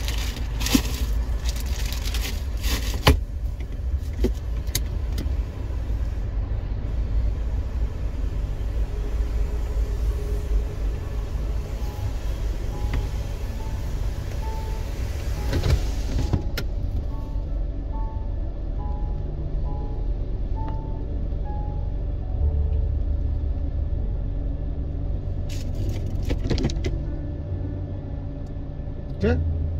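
Low, steady rumble of a car running at low speed, heard from inside the cabin, with a few sharp clicks near the start. A faint tune of music is heard in the middle.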